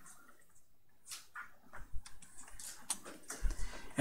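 Faint, scattered light taps and scratches of a pen stylus on a Wacom drawing tablet while lines are being drawn, with a soft low thump about three and a half seconds in.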